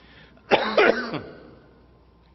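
A man coughs briefly, about half a second in.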